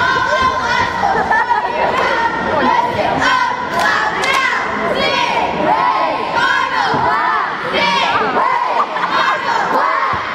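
Young cheerleaders shouting a cheer together, many girls' voices chanting at once over gym crowd noise.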